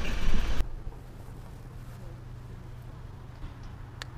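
Wind and road noise on a camera held out of a moving van's window, which cuts off after about half a second. A faint steady low hum follows.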